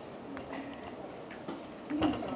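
Quiet classroom background: faint distant children's voices and a few light clicks and taps.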